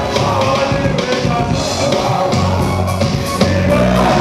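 Loud live band music through a club sound system, with electric guitar, bass and a steady drum beat.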